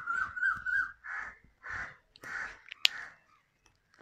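A crow cawing three times in quick succession, harsh calls about half a second apart. Before the calls, a whiteboard marker squeaks thinly against the board. A sharp click comes a little before the end.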